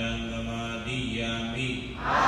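A Buddhist monk chanting with long, steady held notes.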